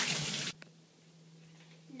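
Kitchen faucet water running into a ceramic bowl held in a sink, shut off abruptly about half a second in, leaving a faint steady low hum.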